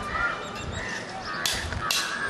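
Street background noise, with two short harsh sounds about a second and a half in.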